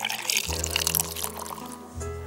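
Liquor poured from a glass decanter onto ice in a tumbler, a crackling trickle that fades out in the second half. Background music with a steady deep bass note comes in about half a second in.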